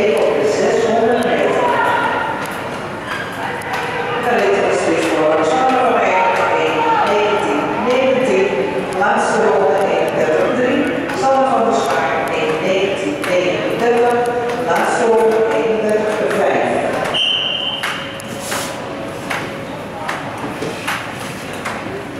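Voices echoing in a large ice-rink hall, with a short high-pitched tone about seventeen seconds in.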